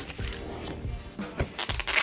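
Plastic shrink-wrap film crinkling as it is peeled off a laptop box, with a few sharp crackles, under faint music.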